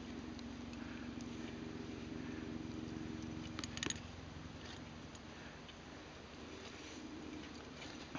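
A faint steady drone of several held low tones, fading after about four seconds, with a few sharp clicks just before the midpoint.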